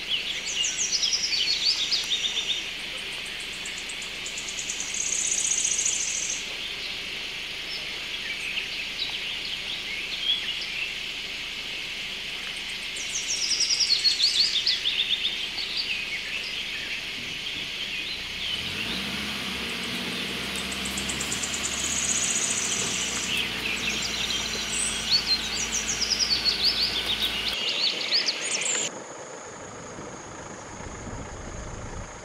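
A chorus of wild birds singing and calling, with a bright run of high notes stepping downward three times, about twelve seconds apart. A low steady hum comes in past the middle, and the birdsong cuts off abruptly just before the end, leaving a quieter low rumble.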